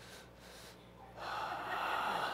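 A quiet pause with faint room tone, then a little over a second in a long, breathy exhale close to the microphone.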